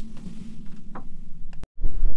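A steady low rumble with a few faint knocks, cut off abruptly near the end, after which wind starts buffeting the microphone.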